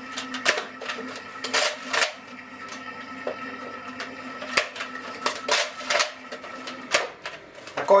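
Plastic clicks and clacks of a Nerf Elite foam-dart blaster being handled, primed and fired, about ten sharp clicks at uneven intervals over a faint steady hum.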